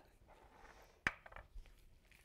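A wooden spoon knocks once, sharply, against a nonstick skillet about a second in. Around it there is only faint stirring of chopped vegetables.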